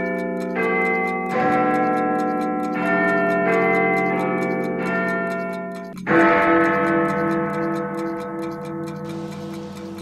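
A clock-ticking sound effect over sustained, bell-like chime chords that change every second or so. A fresh chord is struck about six seconds in and fades with a pulsing tone, and the ticking stops near the end.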